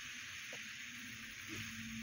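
Steady background hiss from the recording, with a faint low hum coming in about one and a half seconds in.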